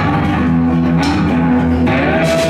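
Live rock band playing: electric guitar and bass guitar holding notes over drums, with drum and cymbal hits about a second in and near the end.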